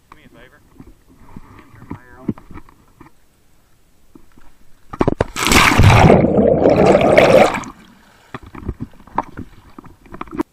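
A scuba diver jumping off a boat into a lake: a loud splash about five seconds in, then rushing, bubbling water over the submerged microphone for about two and a half seconds before it dies away.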